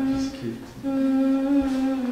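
A woman's voice singing a slow cradle lullaby, humming long held notes. There is a short breath about half a second in, then a note held for about a second that drops lower near the end.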